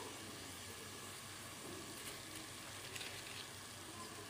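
Faint, steady sizzle of ground mint paste with onions, cashews and green chillies frying on low heat in an aluminium pressure cooker.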